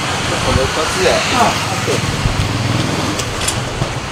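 Truck engine idling with a steady low hum, under brief bits of talk.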